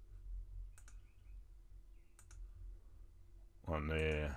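Computer mouse clicks: two sharp clicks about a second and a half apart, over a faint low background hum.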